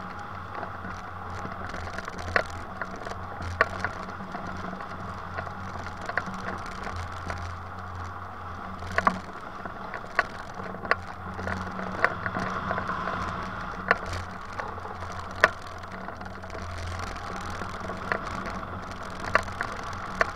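Airflow rushing over the microphone of a camera mounted on a hang glider in flight, a steady wind noise. Irregular sharp clicks or ticks cut through it every second or two.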